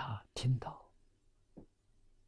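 An elderly man speaking a few soft words in Mandarin, which stop about a second in, leaving a quiet room.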